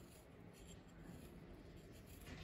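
Near silence with faint scratching: a small metal carving knife cutting into a piece of carrot to shape a flower centre.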